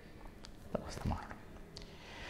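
A man's pause between spoken phrases: faint breathing and a few small mouth clicks.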